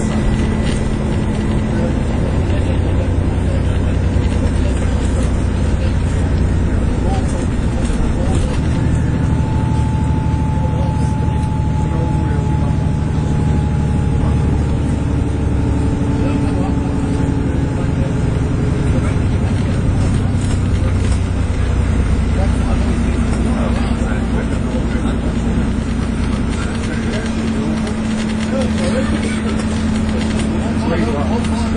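Inside an Alexander Dennis Enviro400 MMC double-decker bus on the move: a steady low drone of its Cummins six-cylinder diesel engine mixed with road and cabin noise. Faint engine and driveline tones drift in pitch as road speed changes, one slowly falling in the middle.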